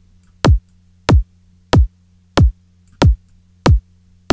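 Layered electronic kick drum looping, about one and a half hits a second, each hit a fast downward pitch sweep into a low thump, with a faint low hum between hits. The timing offset between the two kick layers is being reduced with a sample-delay plugin to bring their waveforms back into phase alignment.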